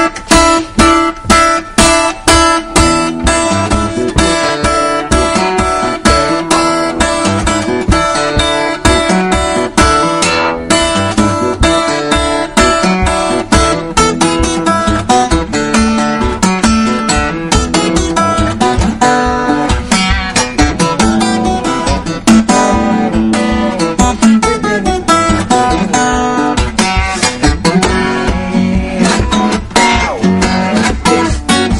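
Solo acoustic guitar played fingerstyle: a steady rhythmic piece with a pulse of sharp string attacks about twice a second.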